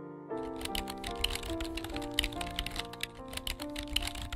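Rapid keyboard-typing clicks, starting just after the beginning, over background music with sustained notes.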